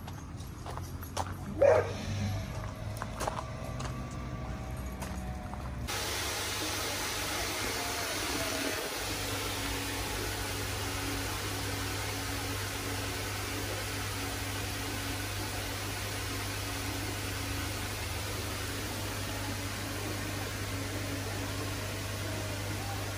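A short, loud cry falling in pitch about one and a half seconds in, then from about six seconds in a steady hiss of aerated goldfish tanks, bubbling air and moving water, over a constant low hum from the pumps.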